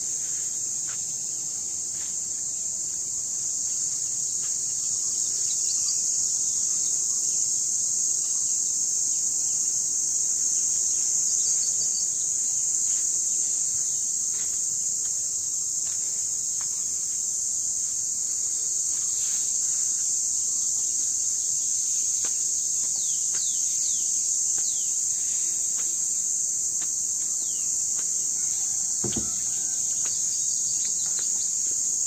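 Steady, high-pitched chorus of insects, with a few short bird chirps over it and a single low thump near the end.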